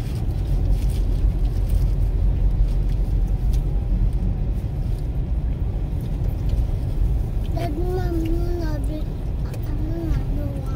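Steady low rumble of a car moving slowly along a rough dirt road, heard from inside the cabin, with a short voice about three-quarters of the way through.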